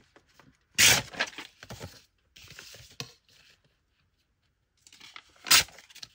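Sheet of tea-dyed paper being torn by hand along a ruler's edge. There are two loud rips, about a second in and near the end, with smaller crackles and rustles of paper between them.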